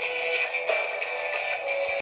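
Music playing from a radio built into a rotary dial telephone, thin and without bass.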